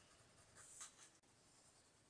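Very faint strokes of a 0.7 mm mechanical pencil shading on paper, a few short strokes about half a second to a second in.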